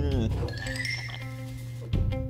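Cartoon soundtrack playing through the reactor's audio: steady background music, a voice's falling glide at the very start, and a short glittering chime-like effect about half a second in.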